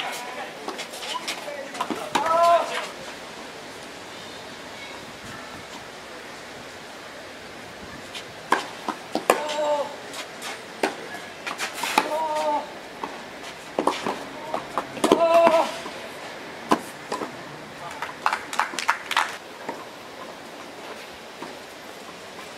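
Tennis ball being struck by racquets and bouncing during a rally on a clay court, a series of sharp hits that come thicker in the second half. Short bursts of people's voices come between the hits.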